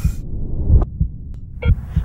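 Deep, muffled thumping in a heartbeat-like rhythm of paired beats, about one pair a second, with a brief spoken "yeah" near the end.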